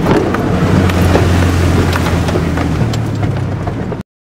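Truck driving through a deep muddy puddle, heard from inside the cab: the engine drones steadily while water splashes and spatters against the body and windshield.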